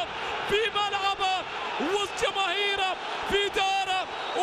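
A male football commentator shouting excitedly at a high pitch just after a goal, over steady crowd noise from the stadium.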